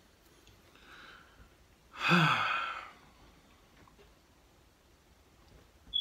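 A man's long, audible sigh about two seconds in, falling in pitch, after a fainter breath just before it. It comes as his lips burn from hot wing sauce.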